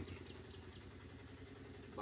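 Faint, steady low background rumble during a pause in speech.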